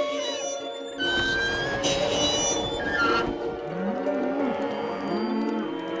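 Cows mooing several times over background music, the moos starting just past the middle; a noisy swell comes in about a second in.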